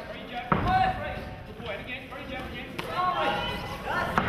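Indistinct voices calling out, with one sharp thud about half a second in.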